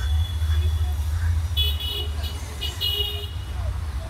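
Steady low street traffic rumble with two short bursts of high, tonal toots, about a second and a half in and again near three seconds, typical of vehicle horns.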